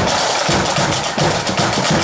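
Marching band snare drums and a bass drum playing a fast, steady march beat, with crisp snare strikes over regular bass drum thuds.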